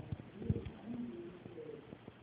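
Muffled, low-fidelity speech: a lecturer's voice on a poor recording.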